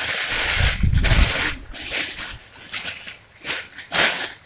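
Rustling and handling noise as clothing is picked up and moved about, with a low bump about a second in.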